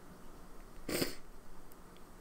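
A single short sniff about a second in, left over from a sneezing fit.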